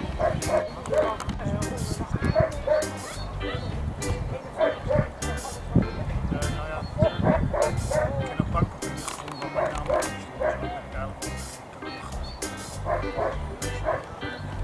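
German Shepherd dog barking repeatedly in short barks, over background music.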